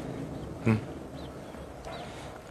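A man's short hesitant "eh" about two-thirds of a second in, a brief nasal grunt, then faint background noise.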